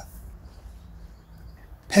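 Faint, steady low hum with soft hiss: background noise with no distinct event.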